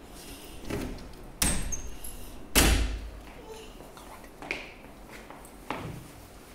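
A series of separate knocks and thuds, five in all, the loudest a heavy thud about two and a half seconds in.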